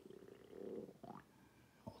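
A faint, low murmur from a man's voice that rises in pitch about a second in.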